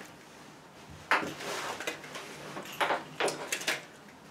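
A sudden rustling scrape about a second in, then a few light knocks: handling noise as someone moves close to the microphone.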